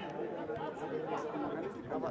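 Several people's voices talking at once, an overlapping chatter with no one voice standing out.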